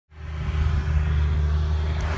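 Diesel engine of a John Deere 650J bulldozer running steadily, a low, even rumble that fades in from silence right at the start.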